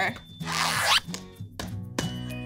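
A zipper drawn shut with one quick zip about half a second in, over light background music.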